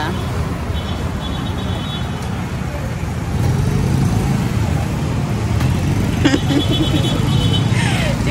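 Street traffic of cars and boda boda motorcycle taxis running past, a steady low rumble that grows louder about halfway through as a motorcycle comes close alongside.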